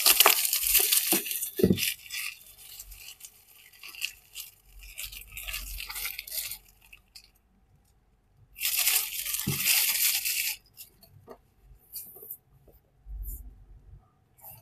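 Clear plastic shrink wrap being peeled off a paperback book and crumpled in the hands. Loud crinkling in the first couple of seconds, lighter rustling for a few seconds, a short pause, then a second loud burst of crinkling about nine seconds in, and a few light clicks near the end.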